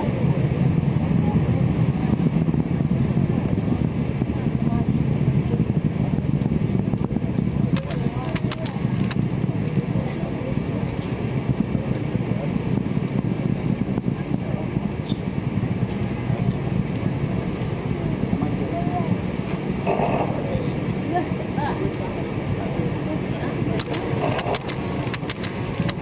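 Space Shuttle's solid rocket boosters and main engines heard from miles away as a steady, deep rumble. A few sharp clicks come about eight seconds in and again near the end.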